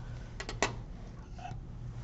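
A few light clicks of steel dissecting instruments being handled on the tray, bunched about half a second in, with one more soft tap near the end, over a faint steady low hum.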